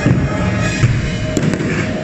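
Fireworks going off in a string of sharp pops and bangs over loud show music.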